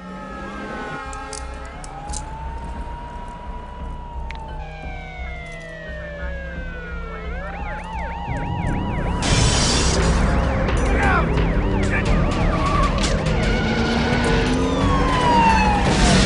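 Several police car sirens sounding at once, overlapping wails that glide up and down in pitch, with a fast yelp pattern about seven to nine seconds in. The sound grows louder and denser from about eight seconds in.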